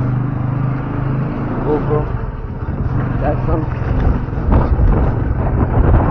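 Motorcycle engine running while riding, with heavy low wind rumble on the microphone; a few short spoken words come through.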